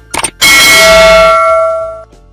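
Subscribe-button sound effect: a quick click, then a loud bell ding about half a second in that rings on and fades over about a second and a half.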